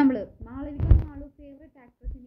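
A woman talking close to a phone's microphone, with one low thump about a second in.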